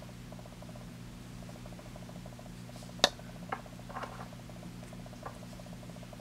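Faint handling noise of yarn being cast onto a wooden knitting needle, with one sharp click about three seconds in and a few softer ticks after it, over a steady low hum.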